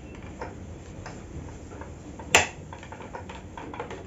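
A duster being wiped over a whiteboard: faint rubbing and small taps, with one sharp click a little past two seconds in.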